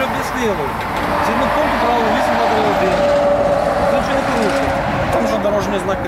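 Men's voices talking over a steady background of road traffic noise.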